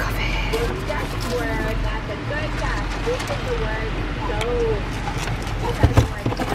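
Steady low road and engine rumble heard from inside a car's cabin, with faint, indistinct voices underneath and a single light knock near the end.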